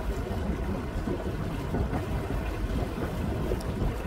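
Steady wind buffeting the microphone, a low rumble over the rush of water from a boat under way on the river.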